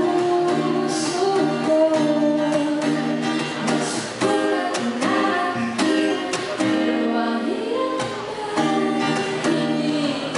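A woman singing a song in Tagalog into a microphone, accompanying herself on a strummed acoustic guitar.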